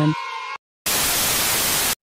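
A burst of TV-style static hiss, about a second long, that starts about a second in and cuts off sharply, an edited-in transition effect at a scene change.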